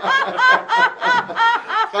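A man laughing heartily in a rhythmic string of short "ha" pulses, about five a second.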